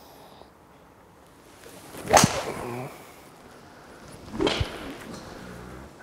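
A TaylorMade M2 hybrid golf club swung and striking a ball off a hitting mat, a sharp strike about two seconds in. A second, similar sharp sound follows about two seconds later.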